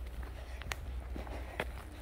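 Footsteps on a dirt trail: a few crisp steps, about a second apart, over a low steady rumble.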